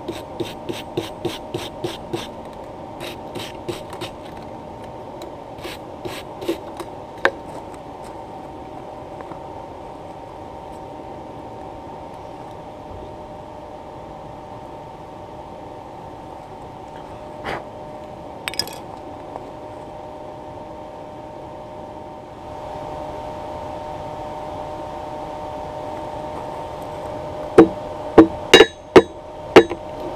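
A steady hum with several tones runs throughout and grows louder about 22 s in, with a run of light taps over the first several seconds. Near the end come several loud hammer blows on an anvil, striking red-hot steel wire being forge-welded and drawn out into a fish hook.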